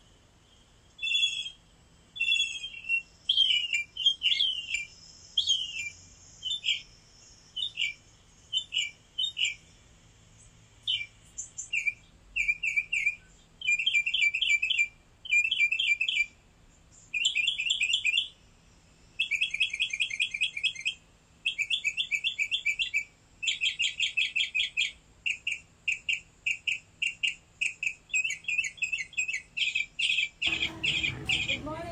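Small birds chirping in short, high, repeated notes. The notes come singly at first, then in dense rapid runs through the second half.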